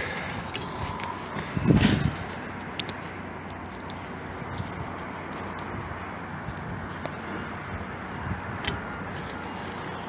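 Steady outdoor background noise, with one low thump about two seconds in and a few faint clicks.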